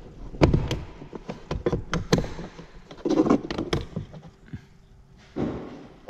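Light plastic clicks and taps as a plastic trim removal tool works at the plastic trim of a car's rear door panel, with a short rustling noise near the end.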